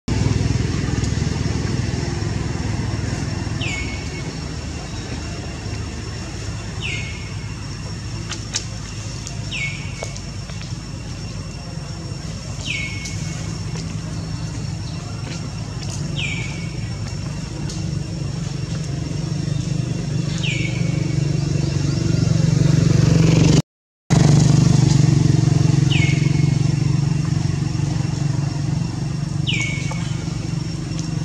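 Steady low drone of a motor vehicle engine running nearby, growing louder in the last third, under a bird's short falling chirp repeated about every three seconds. The sound cuts out for a moment near the end.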